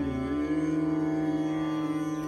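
Male Hindustani classical voice holding one long, steady note in Raga Bairagi over the continuous drone of a tanpura.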